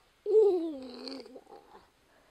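A single drawn-out vocal sound, about a second long, sliding down in pitch, then quiet.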